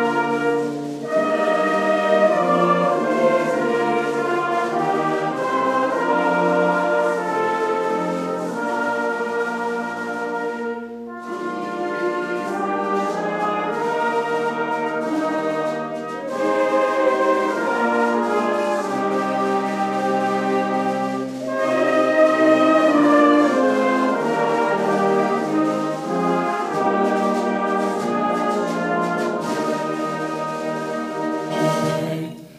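Salvation Army brass band playing a hymn tune in sustained chords, with a brief pause about eleven seconds in.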